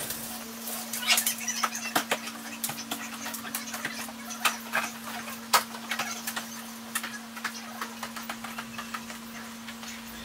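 Irregular knocks, clicks and clatter of household items being handled and carried, including a folding metal bed taken up a staircase, over a steady low hum.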